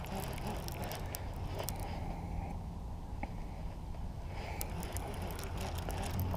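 Baitcasting reel cranked by hand while playing a hooked fish, with scattered faint clicks over a steady low hum.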